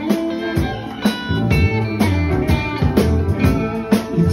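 Live blues band playing an instrumental stretch between sung lines: electric guitar over bass, drums and keyboards, with a steady beat.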